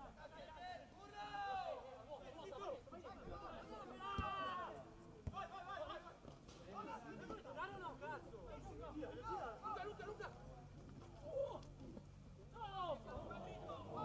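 Several voices calling and talking over one another around a football pitch during play. A couple of sharp knocks come about four and five seconds in.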